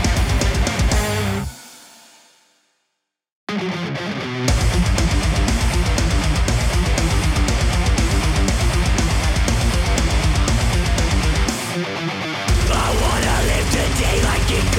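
Death metal band recording: one track fades out over about two seconds into a second of silence, then the next opens with distorted electric guitar alone before drums and bass come in about a second later at full pace. Near the end the low end drops out for about a second, then the full band comes back.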